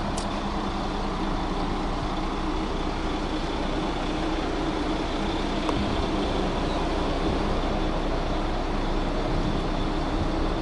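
Steady road traffic noise with a low, even engine hum.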